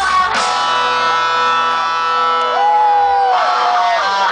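Live rock band, with an electric guitar striking a chord about a third of a second in and letting it ring. Later a single bent guitar note rises, holds and slowly falls, and the full band comes back in near the end.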